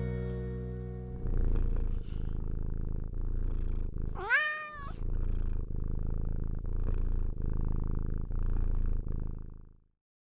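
Acoustic guitar's last chord ringing out, then a cat purring in even pulses about a second long. A single meow rising in pitch comes about four seconds in, and the purring cuts off just before the end.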